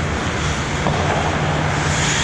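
Steady low hum and rushing noise of an indoor ice rink during play, with faint skate scraping on the ice.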